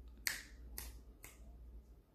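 Three short, sharp clicks about half a second apart, over a faint steady low hum.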